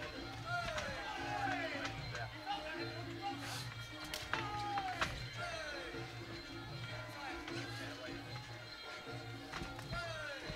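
Traditional Muay Thai fight music (sarama): a wailing reed melody of sliding, wavering phrases over a steady pulsing drum rhythm. A few sharp slaps of strikes or cymbal clicks cut through it.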